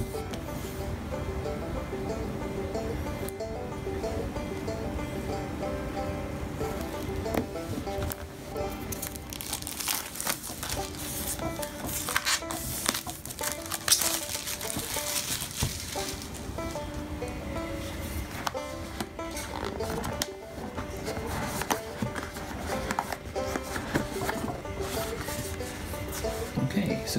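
Background music throughout. Around the middle, clear plastic shrink-wrap crinkles and rustles as it is cut and peeled off a cardboard box.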